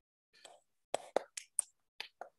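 Faint whispering: a voice speaking very softly in short broken bursts, starting about a second in.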